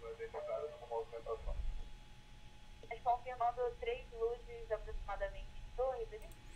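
Faint, tinny air traffic control radio: pilot and controller voices talking over the radio in two short stretches, the second starting about halfway through.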